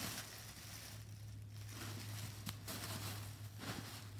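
Plastic packaging rustling and crinkling as it is handled and pulled out of a cardboard box, with one sharp click about two and a half seconds in, over a steady low hum.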